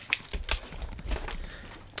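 A bunch of keys clinking and rattling in a hand in irregular light clicks, with a couple of dull handling thumps about halfway through.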